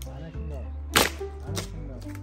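Two sharp cracks of wood being split or broken: a loud one about a second in and a lighter one about half a second later, over background music.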